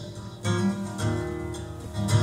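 Acoustic guitar played alone in a pause in the singing: a chord struck about half a second in and another at about one second, each left to ring.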